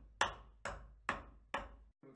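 A hand hammer striking work at a saddle maker's bench: four sharp blows, roughly two a second, each dying away quickly.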